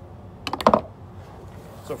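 A quick cluster of sharp clicks and knocks about half a second in, from a drysuit and its hard valve fittings being handled close to the microphone.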